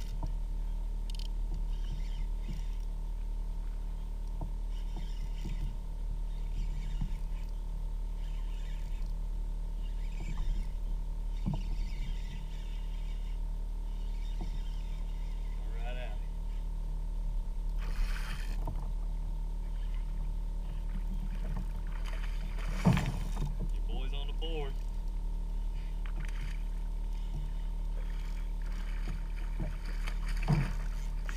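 A fish being played from a kayak on a spinning rod and reel: a steady low rumble, with a few sharp knocks against the kayak (the loudest a little past the middle) and brief faint grunts from the angler.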